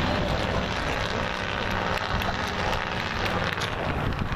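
Steady wind noise buffeting the camera microphone, a rumbling hiss with no clear events in it.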